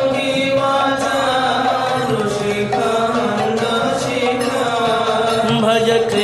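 Sanskrit devotional hymn chanted with musical accompaniment, the voice drawing out long held notes.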